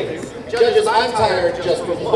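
A person's voice speaking, only speech in this stretch.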